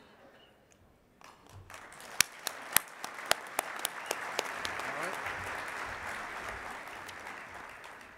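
Audience applauding: it begins about a second in with a few sharp, close claps standing out, swells into a steady round of applause, and fades toward the end.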